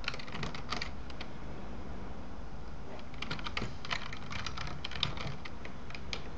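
Typing on a computer keyboard in two runs of quick key clicks: a short one in the first second, then a longer one from about three seconds in until near the end.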